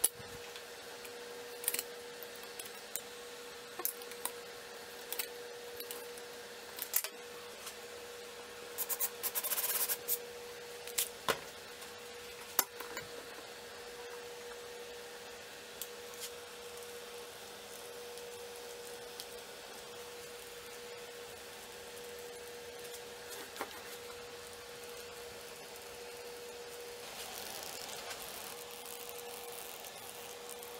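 Faint workbench handling: scattered clicks and knocks of tools and parts being picked up and set down, with a short scraping rub about nine seconds in, over a steady faint hum.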